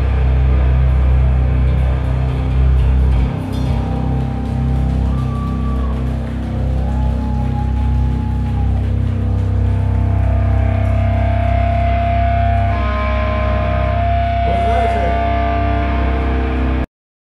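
A live rock band's amplified electric guitars and bass ringing out in a drone at the end of a song. A heavy low rumble drops away about three seconds in, leaving several long, steady guitar-feedback whines at different pitches over a low amplifier hum.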